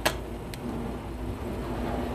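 Plastic flip-top cap of a spice shaker clicking: one sharp snap right at the start and a fainter click about half a second later, over a faint steady hum.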